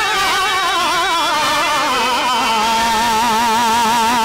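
Male voice singing a Telugu drama padyam in drawn-out, melismatic notes with a wide, wavering vibrato, settling on one long held note about halfway through.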